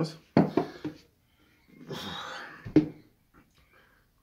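A man burps loudly about half a second in, from air gulped down while chugging a bottle of milk drink, then breathes out heavily. A single sharp knock sounds just before three seconds in.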